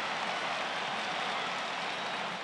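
Steady field-side ambience from a soccer match broadcast: an even, hiss-like wash of stadium noise with no distinct event standing out.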